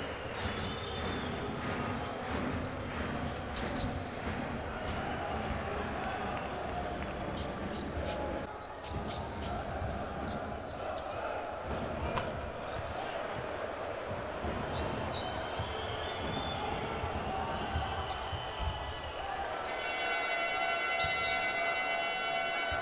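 Basketball game sound in an arena: a ball bouncing on the hardwood court amid steady crowd noise. Near the end, the arena horn sounds a long steady tone, marking the end of the half.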